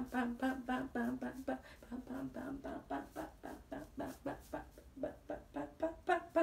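A woman's voice in a quick, even string of short wordless syllables at a nearly steady pitch, humming or chanting in time with her arm exercise.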